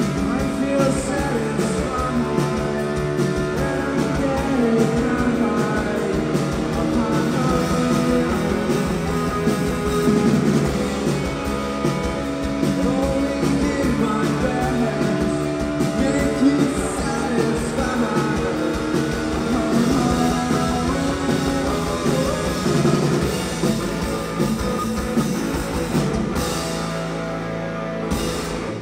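Live rock band playing loudly: distorted electric guitars, bass guitar and drum kit with a sung lead vocal over them, the music running on without a break.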